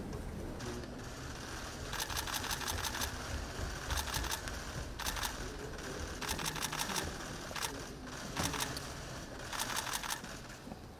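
Still-camera shutters firing in rapid bursts, runs of quick clicks up to about a second long, repeating several times over a low room rumble.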